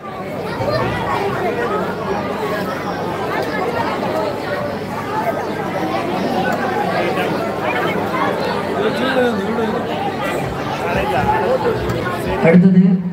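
Crowd chatter: many voices talking at once, at a steady level, with no single voice standing out.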